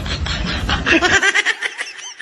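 A person laughing in quick, short bursts; about a second in, the laughter turns to high-pitched giggles.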